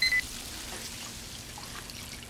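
A digital kitchen timer's rapid alarm beeps, cut off just after the start as it is pressed, then a steady faint hiss of chicken deep-frying in oil.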